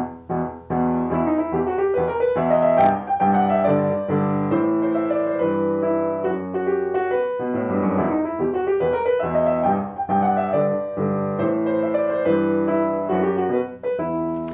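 Upright piano played with both hands, starting about a second in: a rollicking, pirate-like theme in 12/8 time.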